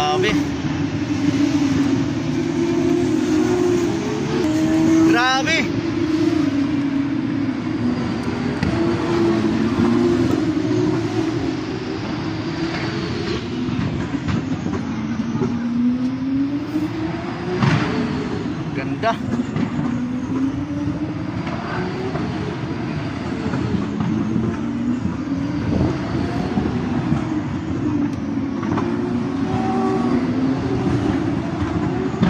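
Formula 1 car engines heard from afar, their pitch climbing again and again as they accelerate, dropping back at each gear change.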